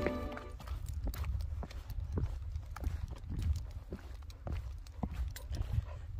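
Hiking boots stepping on a rocky path, short knocks at about two a second, over a low rumble of wind on the microphone. Soft background music fades out in the first half second.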